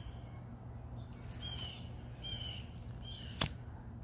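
A few short, high bird chirps, each a brief slightly falling note, over a steady low background hum, with one sharp click about three and a half seconds in.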